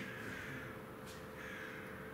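Faint room tone in a lecture room, with a thin steady hum.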